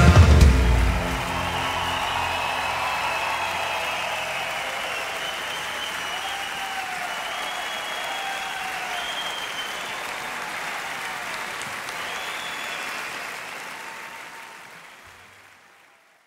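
A live band's final chord rings out and stops about a second in, and a large theatre audience breaks into applause and cheering with scattered shouts. The applause fades out near the end.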